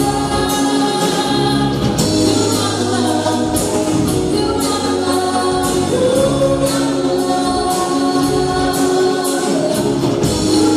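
Live band playing an upbeat song: sung vocals over a drum beat of about two hits a second and a steady bass line.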